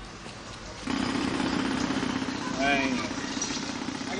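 City street ambience from a film soundtrack: a steady low hum of traffic and a car engine under an even noise haze, growing louder about a second in, with a short spoken word about two-thirds of the way through.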